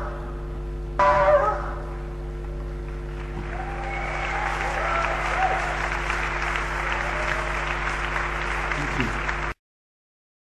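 Live band's final chord struck about a second in and fading, then audience applause and cheering. The recording cuts off abruptly near the end, with a steady electrical hum underneath.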